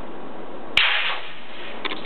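A copper cylinder plunged into a sink of cold water: one sharp slap and splash less than a second in, the splashing dying away over about half a second, with a few faint clicks near the end.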